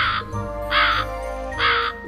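A crow cawing three times, about evenly spaced, over soft background music.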